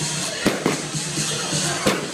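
Aerial fireworks bursting: three sharp bangs, two close together about half a second in and one near the end, over steady background music.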